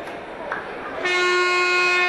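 Basketball arena horn sounding one long, steady blast starting about a second in, over the murmur of the hall. This marks the end of a timeout.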